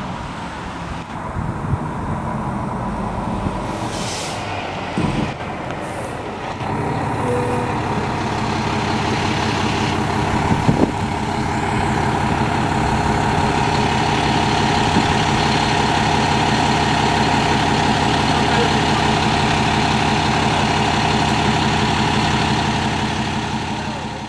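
Fire engine's diesel engine running close by, growing louder about seven seconds in and then holding steady, with a few short air-brake hisses before that.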